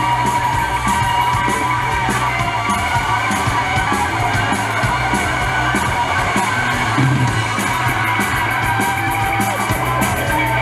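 Live rock band with two electric guitars, electric bass and drum kit playing loudly and continuously. A steady run of crisp cymbal strokes comes in near the end.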